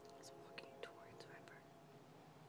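Near silence with about five faint, quick high chirps, each falling in pitch, in the first second and a half.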